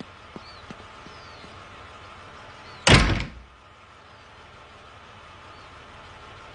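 A front door closing with a single heavy bang about three seconds in, over a faint steady background hum.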